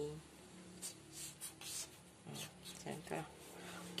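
Felt-tip markers on paper: a series of short scratchy strokes as an answer is written and a box is drawn around it.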